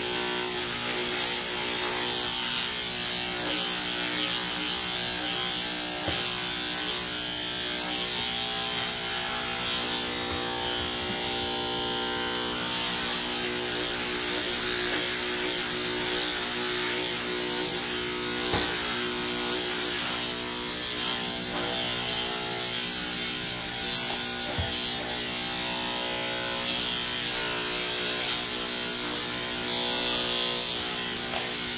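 Electric dog grooming clippers running steadily with an even hum, trimming a Shih Tzu's head and ear fur.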